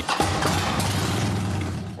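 Harley-Davidson motorcycle's V-twin engine starting just after the beginning and running steadily, fading slightly toward the end.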